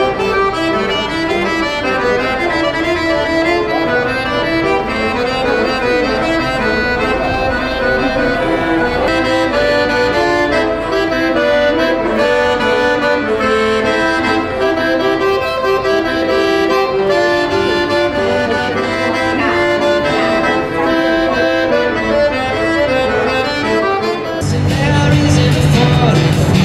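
A small accordion played solo, a melody over held chords. About a second and a half before the end it cuts off and gives way to other music with a heavier bass.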